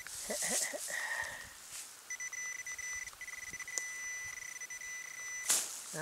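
Metal detector giving a steady high beep for about three and a half seconds over the target in the dig hole, after rustling in the grass and a short beep about a second in. It ends with a sharp rustle or knock.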